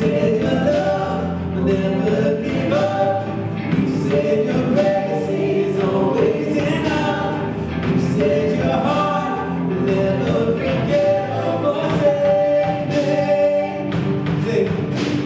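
Live worship band playing a song, with a woman singing lead over acoustic and electric guitars, piano and drums.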